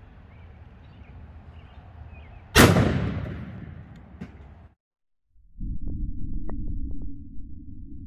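A single 12-gauge shotgun shot firing a Duplex Broadhead slug, about two and a half seconds in, ringing out over about two seconds. After a brief break, a steady low rumble with a few faint ticks.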